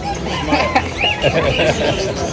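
Caged birds calling in short arched calls, a few in quick succession, over a background of people's voices.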